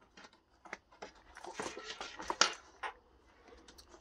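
A Targus Grid Essentials fabric laptop carrying case being handled and turned around on a desk: rustling and scraping of the padded fabric with scattered small clicks, busiest in the middle.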